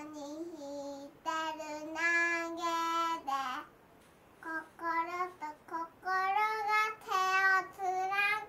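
A young girl singing unaccompanied in a small child's voice: long held notes in two phrases with a short break near the middle, the second phrase pitched a little higher.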